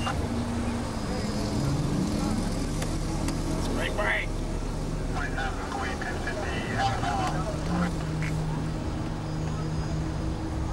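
Car engine and road noise heard from inside a vehicle in slow traffic, running steadily. Indistinct shouting and voices come in over it around the middle.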